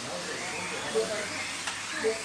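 Several Kyosho Mini-Z 1:28-scale electric RC cars racing on a carpet track, their small electric motors whining with a steady hiss, mixed with voices. There is a brief louder sound about a second in.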